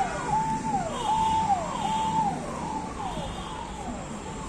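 An electronic siren repeating a held high tone that drops in pitch, about every three-quarters of a second, growing fainter in the second half.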